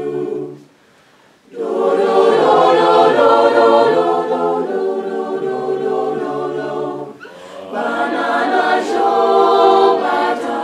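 Mixed-voice a cappella group singing a sustained, multi-part harmony. The voices stop for about a second near the start, then come back in full, with a brief dip about seven seconds in.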